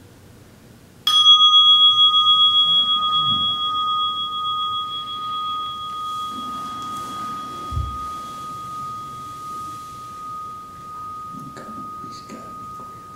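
A meditation bell struck once about a second in, marking the end of the sitting: a clear ringing tone with a fainter higher overtone that fades slowly and is still ringing at the end. A soft low thump a little past the middle.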